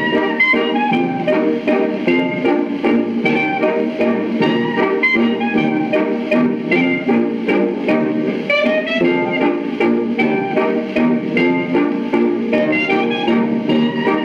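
Old-time dance band playing an instrumental stretch of a waltz quadrille, reproduced from a 78 rpm record on a turntable. The sound is narrow, with no high treble.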